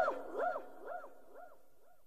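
The rapper's last word repeating as a fading vocal echo (a delay effect), about two repeats a second, each quieter than the one before, dying away near the end.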